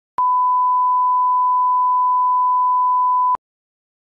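A steady 1 kHz reference tone, one pure beep about three seconds long that starts and stops with a click. It is the line-up tone used to set audio levels at the head of a tape, here left on a film transfer.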